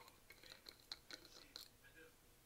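Faint clicks and scratches of a screw cap being twisted off a shower gel bottle, a handful of small ticks spread over about two seconds.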